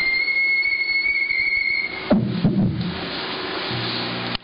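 Theremin holding a steady high, whistle-like note for about two seconds, which then cuts off suddenly. It is followed by a couple of knocks and low, wavering theremin sounds as the player's hands and body move away from the antennas, and a low hum near the end.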